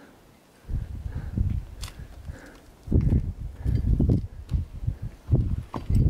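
Wind buffeting the microphone in irregular gusts, heavier in the second half, with a couple of faint clicks.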